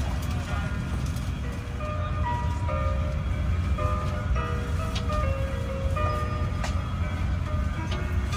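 Soft melodic music playing through an airliner cabin over a steady low cabin rumble, with faint voices. The music's notes change pitch every fraction of a second in a simple tune.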